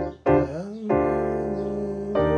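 Nord Stage keyboard's piano sound playing sustained chords around D minor 7 with an added fourth. A chord stops just after the start and a short stab follows. A brief sliding note comes about half a second in, before a new chord is struck and held.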